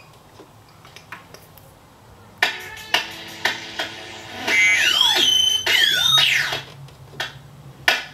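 Electronic clock clicks from a Eurorack clock-capture module, ticking about every half second in time with a sequenced drum track. About halfway through, a couple of seconds of swooping synth tones slide up and down over the clicks.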